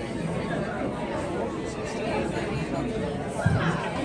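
Indistinct chatter of many diners' voices in a restaurant dining room, with a brief knock about three and a half seconds in.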